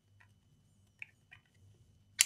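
Near silence, with a few faint small clicks from a laptop RAM module being handled in its slot, the sharpest about a second in.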